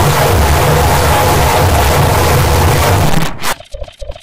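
Heavily distorted, very loud digital noise with a low rumbling drone underneath, the kind of audio mangling a glitch edit applies. About three seconds in it cuts off and breaks into rapid choppy stutters.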